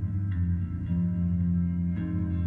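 Live band music: a sustained low droning chord, with new notes coming in about a third of a second in and again near one second.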